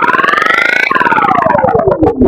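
Electronically distorted logo sound effect: a rapidly pulsing, pitched sound that glides upward in pitch until about a second in, then glides back down.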